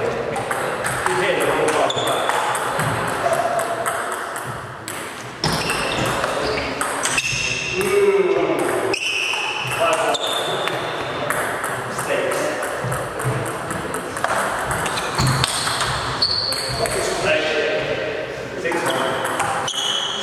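Table tennis rally: the ball clicking off the bats and the table in quick, irregular succession.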